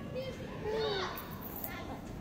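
Children's voices at play, with a short high-pitched call about a second in.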